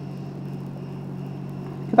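Steady low background hum with a faint even hiss, from the room or the sound equipment.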